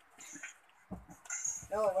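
Items being handled in an open cardboard box, with a low knock about a second in, then a child's voice near the end.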